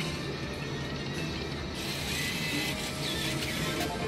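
Eyes of Fortune Lightning Link video slot machine running a free spin: steady electronic reel-spin clicking and game music over the din of a casino floor.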